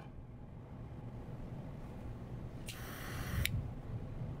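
Quiet room tone with one brief, soft hiss about three seconds in, lasting under a second.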